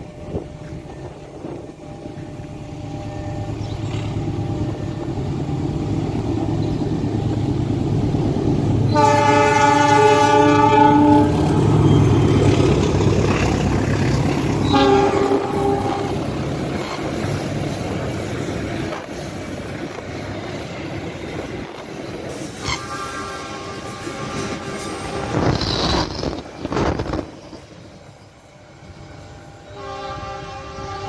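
A diesel-locomotive-hauled passenger train approaches and passes at speed. Its rumble builds to a peak, with a long horn blast about nine seconds in and a short one around fifteen seconds, then the coaches' wheels run past on the rails. Another horn sounds around twenty-three seconds in, followed by a few sharp knocks as the noise dies away.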